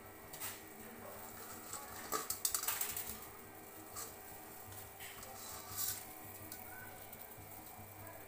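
Faint boiling water in a steel pot as a block of instant noodles is put in, with scattered small pops and clicks and a busier run of them about two to three seconds in.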